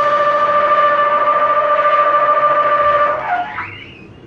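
A wind instrument holding one long, steady high note that stops about three seconds in. A quieter sliding pitch then swoops up and back down.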